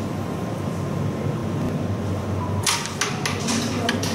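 A carrom striker flicked across the board: a sharp click as it strikes about two and a half seconds in, then a few quicker clicks as the striker and coins knock together and off the wooden frame. A steady low hum runs underneath.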